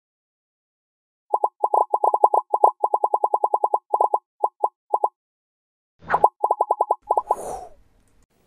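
Cartoon pop sound effects for an animated logo: a rapid, uneven string of short identical pops, one per red star tile dropping into place, then a short rising swoosh about six seconds in, a few more pops and a brief closing swish.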